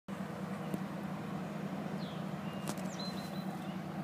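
Steady low drone of distant diesel locomotives (GP38-2s and a B32-8) approaching, with a few faint bird chirps about halfway through and near the end.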